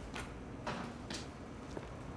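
Quiet room tone with a steady low hum and three faint, soft clicks or rustles.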